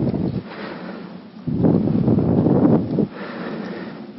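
Rustling, blowing noise on the lecture microphone in two spells, the louder one starting about a second and a half in and lasting about a second and a half.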